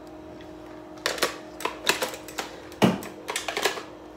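A run of sharp clicks and knocks, with the heaviest knock just before the three-second mark, as a wall intercom handset is hung up and handled. A faint steady hum runs underneath.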